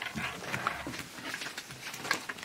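Scattered soft knocks, clicks and rustles of a person sitting down at a desk and settling into the chair.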